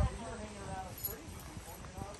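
Faint background talk: a few people's voices conversing at a distance, with no clear words.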